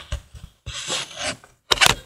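Camera handling noise: fingers rubbing and scraping over the microphone, then a few sharp knocks against the camera near the end.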